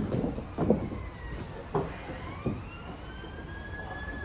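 A faint siren gliding slowly up in pitch from about a second in, then starting to fall again near the end. Over it, a few soft thumps and rustles in the first two and a half seconds as a body in a gi rolls and sits up on the mats.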